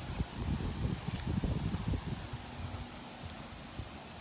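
Wind buffeting a phone's microphone in low, uneven rumbles that ease off about halfway through.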